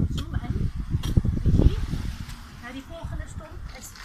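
Hand axe chopping into the roots of a palm stump: several dull blows at irregular spacing over a low rumble.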